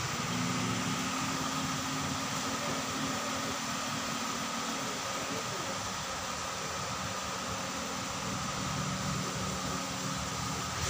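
A steady mechanical hum over a constant hiss, with a thin high tone held throughout; the lower hum thins out about halfway through.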